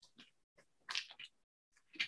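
Mostly near silence, with a faint, brief rustle about a second in and another at the very end, as fabric and a slippery pad protector are slid off a heat press.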